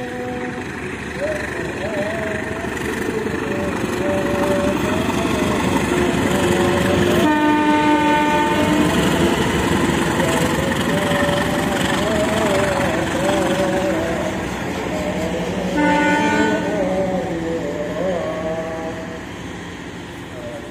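CC201 diesel-electric locomotive hauling a passenger train past at close range, its engine and running gear growing louder toward the middle and then easing off. A multi-tone train horn sounds twice: a longer blast about seven seconds in and a shorter one around sixteen seconds.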